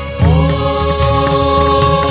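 Hindu devotional music for Shiva, chant-like: a long held note slides up into pitch about a quarter of a second in and holds over a steady low drum beat.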